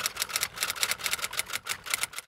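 Typewriter keys striking in quick, even succession, about eight strikes a second: a typing sound effect laid over on-screen text being typed out.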